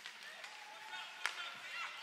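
Ice hockey play at rink level: faint noise of skating on the ice, with a single sharp clack of a stick on the puck a little past a second in.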